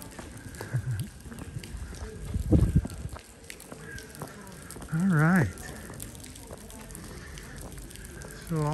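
Outdoor background noise with low rumbling on the microphone, loudest about two and a half seconds in. A man's short spoken sound comes about five seconds in.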